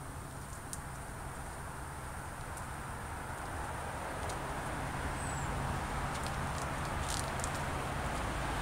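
Steady outdoor background rumble with a low hum and a few faint clicks, slowly growing louder.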